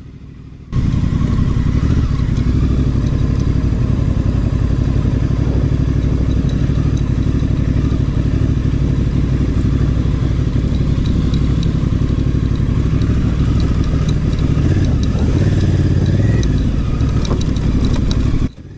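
Honda Africa Twin's parallel-twin engine running at low, steady speed as the motorcycle is ridden slowly over a rocky dirt trail. The sound cuts in abruptly less than a second in.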